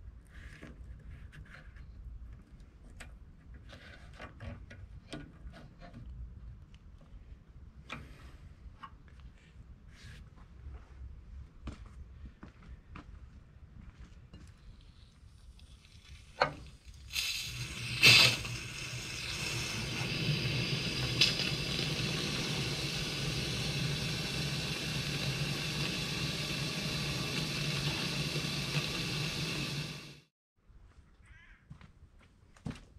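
Faint clicks of hands working on the radiator hose and clamp. Just past halfway comes a knock, then a steady rush of water from a hose pouring into the tractor's radiator filler neck, with one sharp clank shortly after the flow starts.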